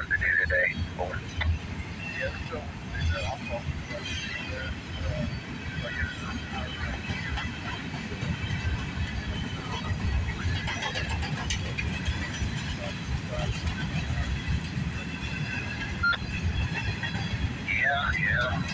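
Freight train rolling past on a nearby track, a steady low rumble with faint high squealing tones from the wheels.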